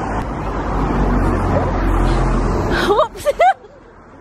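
Road traffic: a vehicle going past on the street, a steady rumble that cuts off sharply about three seconds in.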